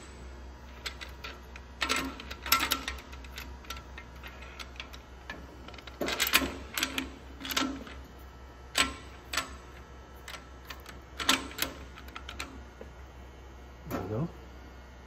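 Light metallic clicks and clinks, in scattered clusters, from the steel rod and mandrel of a hydraulic cam bearing tool being handled and slid through the cam tunnel of a small-block Chevy block.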